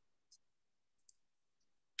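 Near silence with two faint short clicks, about a third of a second and about a second in: a plastic straw tip being pressed into soft air-dry clay to stamp small circle textures.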